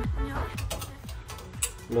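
Background music that stops about half a second in, then a quick run of light metallic clicks and clinks as the motorcycle fork's tubes and washer are handled.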